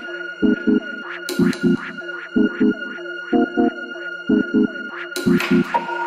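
Deep house electronic dance track: a figure of three short bass notes repeats about once a second under held synth tones, with a bright cymbal-like hit about a second in and again near the end.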